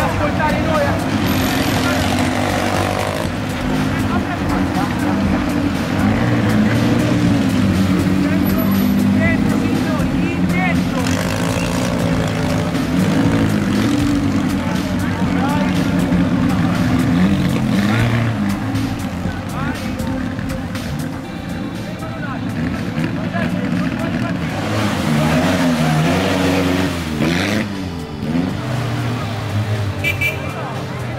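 Vintage 1920s–30s sports car engines idling and pulling away one after another, with people talking nearby.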